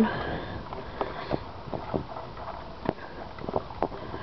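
Scattered light clicks and knocks of hands handling the air cleaner cover on an early-1970s Briggs & Stratton lawnmower engine, with the engine not running.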